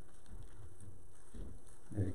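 Pages of a Bible being turned by hand, with a faint paper rustle in the second half, over quiet room tone.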